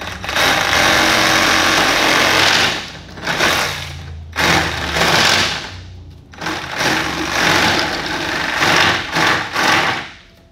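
Handheld rotary tool running and cutting into a plastic concentric vent pipe: one long cut of about two and a half seconds, then shorter bursts with brief pauses as the pipe is turned. These are shallow cuts along the marked line that score the outer pipe without going through to the inner pipe.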